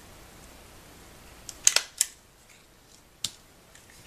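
Tiny Attacher mini hand stapler clicking as it drives a staple through stacked paper feathers: a quick run of three sharp clicks about one and a half to two seconds in, then one more a little after three seconds.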